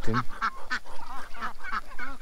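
Mixed farmyard poultry flock of ducks, chickens and turkeys calling in short, scattered notes.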